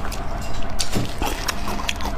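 Close-miked chewing of fatty braised pork belly: a series of sharp, wet mouth clicks, about five or six in two seconds.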